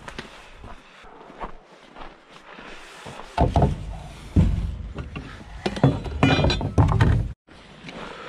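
Lumber being handled and set down: wooden knocks and thumps with deep rumbling handling noise on the microphone, plus a brief clink about six seconds in. It cuts off suddenly near the end.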